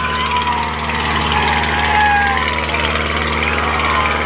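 Farmtrac 6055 tractor's diesel engine running steadily under heavy load, hauling two disc harrows in tandem through ploughed soil. Voices and shouts from a crowd ride over the engine.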